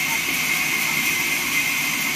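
Vertical band sawmill running steadily while a timber slab is fed through its blade. It makes an even, continuous hiss with a steady high tone through it.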